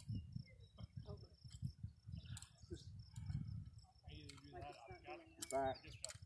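Gusty low wind rumble on the microphone, with a faint steady high tone, a few light clicks, and quiet talk in the second half.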